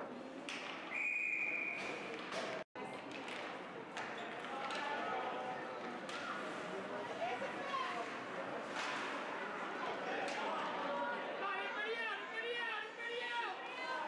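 Ice rink game sound: a referee's whistle gives one short, steady blast about a second in, then sharp clacks of sticks and puck and the voices and shouts of players and spectators echo through the arena, with a rising and falling yell near the end.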